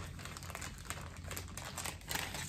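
Paper cutouts rustling and crinkling as they are shuffled through by hand, a string of small soft crackles.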